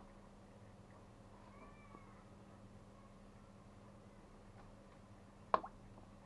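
A glass jar knocking once, sharply, against the cucumbers and wooden bowl as it is set down into the brine as a weight, with a small second tap right after, near the end. Earlier, about a second and a half in, a faint short cry rises and falls once.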